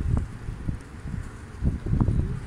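Wind buffeting the microphone in gusts, a low rumbling noise that surges at the start and again near the end.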